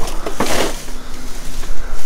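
Thin clear plastic bag rustling and crinkling as it is handled, with a louder burst of crinkling about half a second in.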